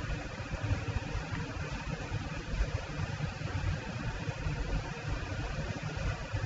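Steady background noise with no speech: a fluttering low rumble under an even hiss, the room tone picked up by the recording microphone.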